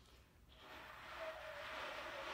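Breathy rush of air from a trumpet player's lips, starting about half a second in, with only a faint trace of pitch. It is the sound of lips set too far apart to vibrate, so air goes through without a clear tone.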